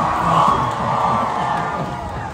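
A crowd cheering as a performer is introduced on stage, swelling about half a second in and then slowly fading.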